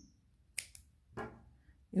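Scissors snipping through crochet yarn: one sharp click about half a second in, followed by a softer tap a little later.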